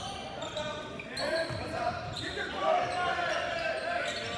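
Live basketball game in a large gym: voices calling out over a ball bouncing on the hardwood court, with the hall's echo.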